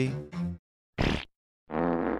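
Comic sound effects: a short sharp crack about a second in, then a low, buzzy, raspy blast lasting under a second.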